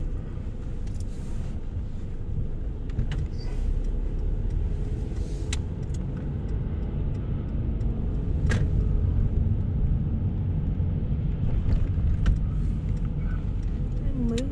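Cabin noise of a Mercedes-Benz car driving slowly on a city street: a steady low rumble of engine and tyres, with a few faint, irregular clicks.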